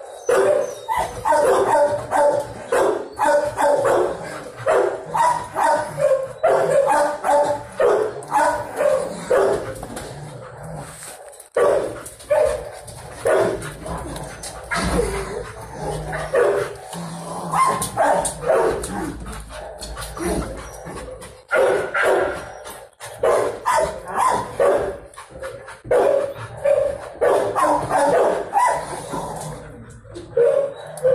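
Kennel dogs barking in rapid, nearly nonstop runs, with a brief lull about eleven seconds in.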